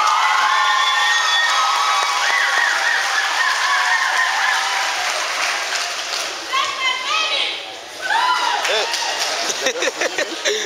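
Audience applause, with voices whooping and cheering over it; the applause is strongest at first and thins out over the last few seconds.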